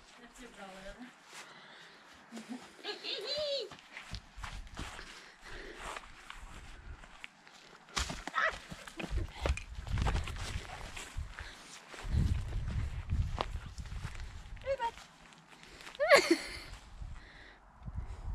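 Footsteps and rustling through grass and garden plants as someone walks and runs, with bursts of low rumble on the microphone. A short, rising vocal exclamation about two seconds before the end.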